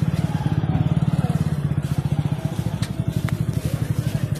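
A small engine idling with a fast, even throb.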